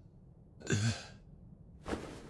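A short, breathy vocal sound like a sigh from an anime character's hoarse voice, about two-thirds of a second in, with another brief breathy sound just before the end.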